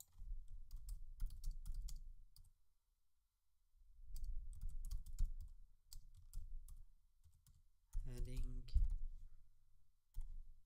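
Typing on a computer keyboard: two quick runs of keystrokes with dull thumps under the clicks, then a few scattered keystrokes. A brief voice sound, with no words, comes near the end.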